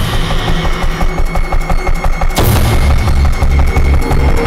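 Dramatic trailer score: a fast pulsing low rhythm with quick percussive ticks, a thin held high tone coming in about a second in, and a heavy boom hit about two and a half seconds in.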